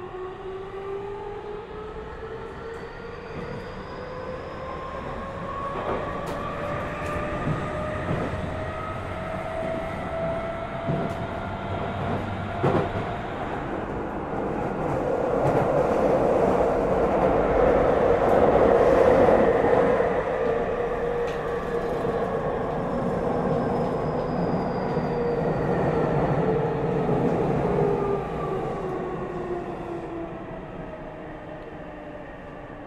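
Tokyu 3000 series train's Toshiba IGBT VVVF inverter and traction motors whining in several tones that climb in pitch as the train accelerates, with a few sharp clicks from the wheels. The running noise then swells, loudest past the middle, and near the end the whine falls in pitch again as the train brakes.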